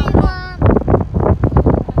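Wind buffeting the microphone of a moving boat in irregular gusts, with a deep rumble underneath. A high-pitched voice trails off in the first half second.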